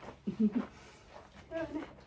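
A woman's voice: a short wordless vocal sound, then a single spoken word, with quiet room tone in between.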